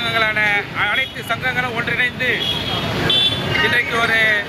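A man speaking in Tamil without pause, addressing a press gathering, with faint traffic noise behind.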